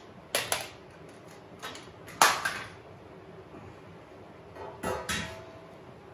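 A few sharp metallic clanks and knocks come in three clusters, the loudest a little after two seconds in with a brief ring. They come from a metal straight edge and level being handled and set down against the car's bodywork and frame.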